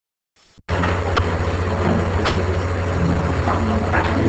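Steady low rumble with hiss on the microphone, cutting in abruptly just under a second in, with a couple of faint clicks over it.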